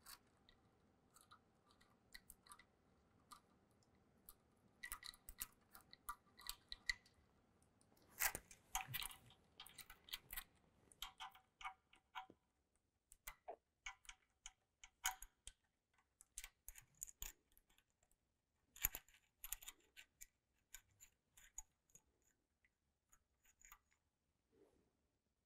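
Faint, scattered metallic clicks and clinks of a new timing chain being handled and fed over the cam and crank sprockets of a GM 3.6L V6, some with a brief metallic ring.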